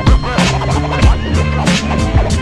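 Hip hop track playing: a beat with deep, sustained bass notes under sharp, repeated drum hits.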